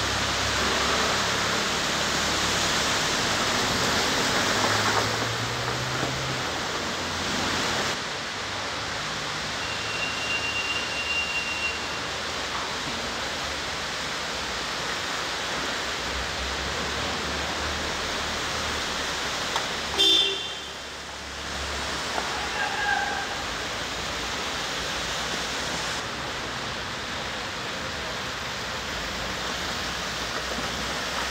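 Vehicles driving slowly through deep floodwater in a road underpass: a steady rush of churning, splashing water mixed with engine noise. About two-thirds of the way through, a short car-horn toot is the loudest sound.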